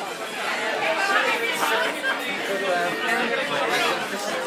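Many people talking over each other: the overlapping chatter of a crowded café.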